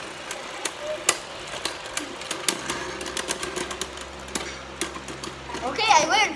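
Two Beyblade Burst spinning tops clashing in a clear plastic stadium: a run of sharp, irregular clicks as they strike each other and the stadium wall. A voice begins right at the end.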